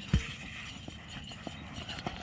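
Irregular footfalls of a yoked pair of Ongole bulls and the men running beside them on a dirt track, with one louder thud just after the start and fainter knocks after it.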